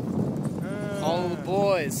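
A man's long drawn-out yell, its pitch wavering up and down in a bleat-like way, running into the shouted word "boys" near the end.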